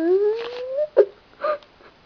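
A young person's drawn-out whining vocal noise, held on one pitch and then gliding upward before breaking off just under a second in, followed by a few short giggles.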